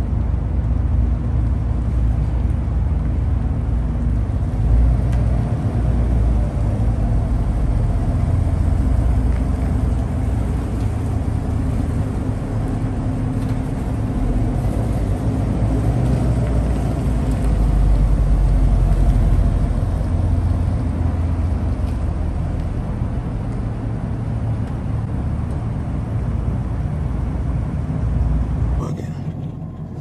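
Chevrolet Camaro engine and exhaust running as the car rolls slowly through a concrete parking garage, a low steady rumble that swells a little past halfway and cuts off near the end.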